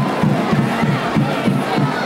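Football stadium crowd: many voices shouting and cheering together, over a low, steady beat of band music.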